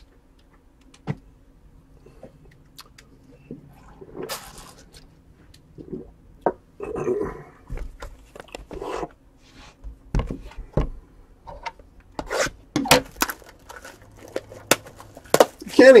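Hands handling a cardboard trading-card box and its plastic wrapping: scattered taps, scrapes and crinkles, quiet at first and busier in the last few seconds.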